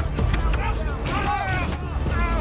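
A person's high-pitched cries or screams, without words, over a steady low rumble.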